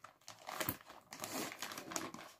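Clear plastic bag crinkling as fingers handle it and work it open, a run of small irregular crackles.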